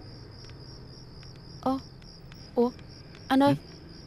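Crickets chirping in a steady, high, pulsing trill, with three short vocal sounds cutting in over the second half.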